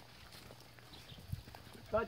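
Faint footsteps on a dry path strewn with fallen leaves and grass, a few soft knocks, one a little louder just past the middle. A man's voice starts speaking right at the end.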